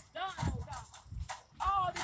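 Speech: a voice praying aloud, the words drawn out in two intoned phrases with a short pause between.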